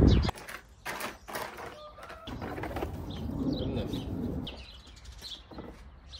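A few sharp clicks and knocks from hands working on car body and engine-bay parts, with birds chirping in the background.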